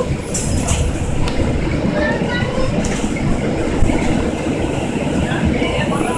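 Cabin noise of a city transit bus under way: a steady low drone of engine and road noise, with a few short clicks and rattles from the body and fittings.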